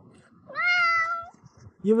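A domestic cat meowing once: a single call of just under a second that rises at the start and then holds steady. It is an angry meow at finding the freeze-dried treats picked out of its food container.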